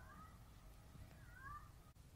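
Near silence with a faint low room rumble. Two faint short pitched calls stand out, one right at the start and a slightly louder one about one and a half seconds in.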